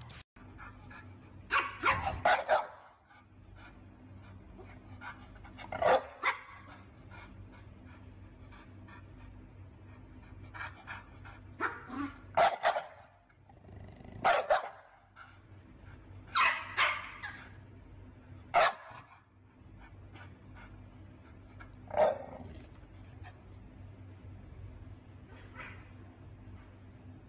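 Pit bull–type dog barking: loud barks, singly or in short runs of two or three, every few seconds.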